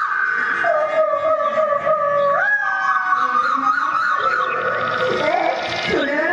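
Stage music: a lead melody of long held notes that slide upward from one pitch to the next.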